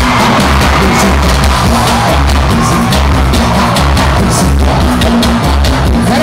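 Loud live band music with a heavy, pulsing bass beat and drums.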